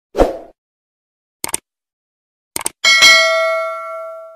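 Subscribe-button animation sound effects: a short thump, then two quick double mouse clicks about a second apart, then a bell ding that rings on and fades away.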